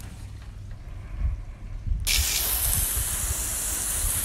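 Water from a hose spray nozzle hissing onto a wooden deck: it starts suddenly about two seconds in and then runs steadily.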